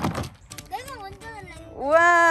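Voices at the end of a toy-car race: a short spoken word about a second in, then a loud, drawn-out, wavering call near the end.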